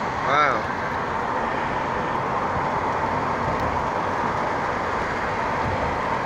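Steady road and wind noise of a moving car heard from inside, with a brief voice in the first half-second.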